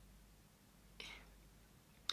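Near silence: room tone, with one short, soft hiss about a second in.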